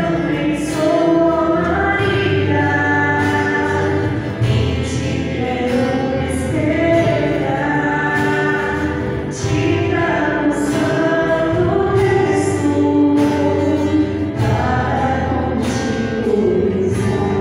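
A church choir singing a religious song, voices moving through long held notes without a break.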